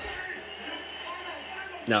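A man's voice: the tail of a pained exclamation right at the start and a short 'No' near the end, with faint background talk and room hum between.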